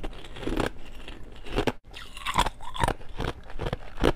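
A person chewing and biting through thin shells of frozen ice: a run of irregular crunches and crackles, with a brief break just under two seconds in.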